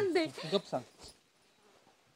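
A woman's whimpering, whining voice trails off within the first second, then it goes quiet.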